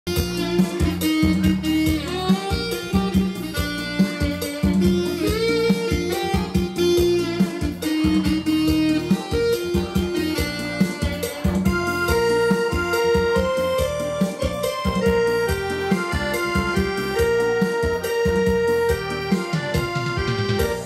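Korg arranger keyboard playing an instrumental romvong dance tune: a plucked, guitar-like melody over a steady drum beat and bass.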